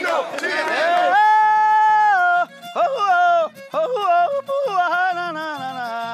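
A man singing a wordless, melismatic vocal cry in the style of the lamento that opens a Panamanian décima. It rises into a long held high note about a second in, then breaks into wavering, sliding phrases over a low instrumental accompaniment.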